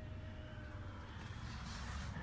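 Faint, steady low background rumble with a faint steady hum, and no distinct events.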